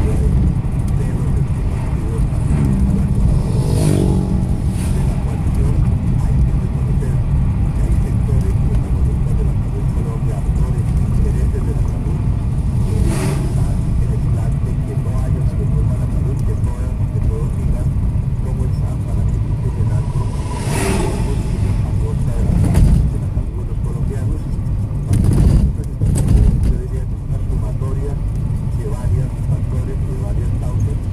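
Road and engine noise inside a moving car's cabin, a steady low rumble, with a few short knocks or bumps scattered through it.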